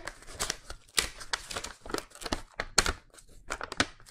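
A folded paper product leaflet being unfolded and handled close to the microphone: irregular crisp crinkles and rustles, with a few louder snaps of the paper.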